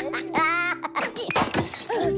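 Cartoon slapstick soundtrack over a held music note: a short, high, wavering cry from a Minion about half a second in, followed by sudden crashing and clattering sound effects as the Minions tumble into a pile.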